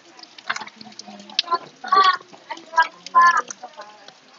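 A chicken clucking: two short, loud calls about two and three seconds in, over faint background chatter.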